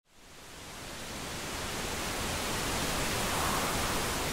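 Rushing water of the Cascata delle Marmore waterfall: a steady wash of noise that fades in from silence and grows louder.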